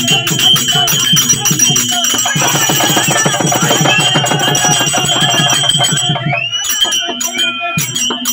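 Therukoothu ensemble music: a drum beaten fast and steadily, with jingling and a held high tone over it. The drumming thickens into a dense roll about two seconds in, breaks off briefly near six seconds, then starts again.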